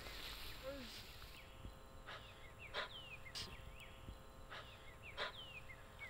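Faint outdoor birdsong: short chirps and several downward-sliding whistles, repeating about once a second, over a faint steady hum.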